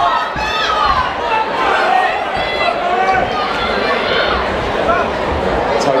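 Crowd of spectators chattering and shouting in a large hall, overlapping voices throughout.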